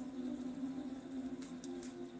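Soft background music of steady held tones, with a few faint ticks from a tarot deck being shuffled by hand in the second half.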